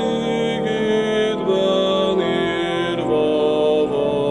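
A man singing a Hungarian Reformed hymn in slow, held notes.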